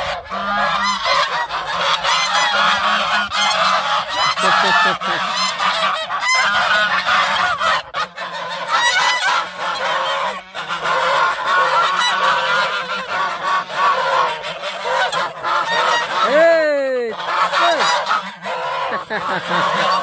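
A flock of domestic geese honking continuously, many calls overlapping. One louder call stands out about three-quarters of the way through.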